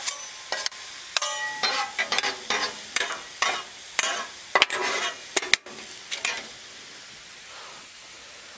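Metal spatulas scraping and clacking on the steel top of a Blackstone griddle as zucchini and yellow squash noodles are tossed, over steady sizzling. The scraping stops about six and a half seconds in, leaving only the sizzle.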